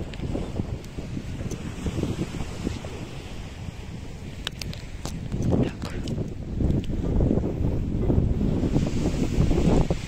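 Wind buffeting the microphone in gusts, a low rumble that grows louder in the second half, with a few light clicks along the way.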